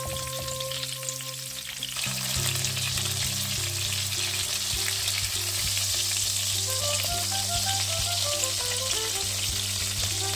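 Food sizzling as it fries in a pan, louder from about two seconds in, with background music of a stepped melody over a bass line.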